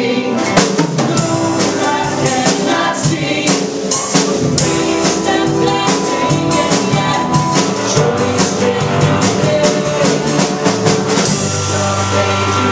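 Live Christian worship song: a band with drum kit, guitar and keyboard plays with a steady drum beat while voices sing.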